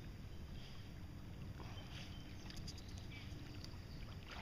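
Quiet water sounds of a small boat on a calm lake: a low steady rumble with water lapping, and a few faint ticks of drips or small splashes about two and a half seconds in.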